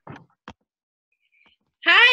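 A woman's voice breaks in near the end with a loud, drawn-out excited call whose pitch rises and falls. Before it there are only a couple of brief soft noises.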